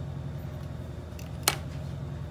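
One sharp click of a craft knife against a plastic cutting mat as a thin strip of fondant is trimmed, about a second and a half in, over a steady low hum.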